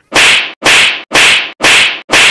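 A slap sound effect repeated four times in quick succession, about two a second. Each hit is a loud, identical sharp swish-and-smack.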